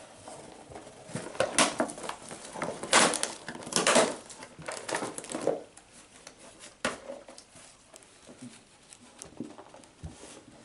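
A Labradoodle puppy rustling and crinkling a colourful gift bag as it noses, mouths and carries it, in irregular bursts that are loudest through the middle. After that it goes quieter, with scattered rustles and one sharp tap about seven seconds in.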